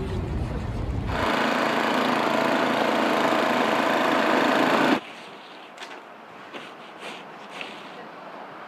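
Ariens snowblower engine running as it clears snow, loud and steady for about four seconds before cutting off abruptly. Before it comes a brief low rumble, and after it quieter, scattered scrapes of a snow shovel.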